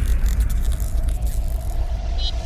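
Logo-reveal sound effect: the long, deep tail of a boom slowly fading, with faint crackling sparkle in the first second and a thin, faint tone coming in about halfway through.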